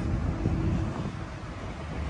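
Wind buffeting an outdoor phone microphone: an uneven low rumble over faint background noise.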